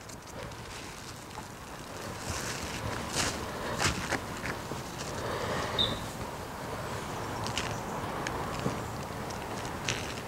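Plastic wrap rustling and crinkling under gloved hands, with scattered light clicks and taps as a sausage log is handled and seasoned.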